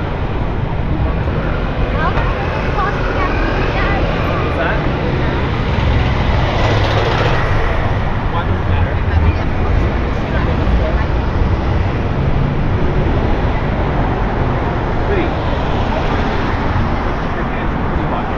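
City street ambience: steady road-traffic noise from passing cars, swelling briefly about seven seconds in, with passers-by talking.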